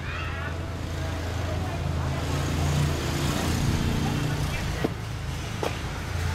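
A road vehicle's engine passing nearby, swelling and fading over a couple of seconds in the middle, over a steady low hum. Two short knocks near the end.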